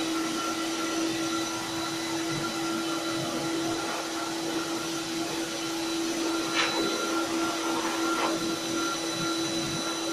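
Pet groomer's high-velocity blow dryer running steadily: a constant motor whine with a low hum.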